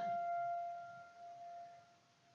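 A single high held note, a clear ringing tone that fades away over about a second and a half.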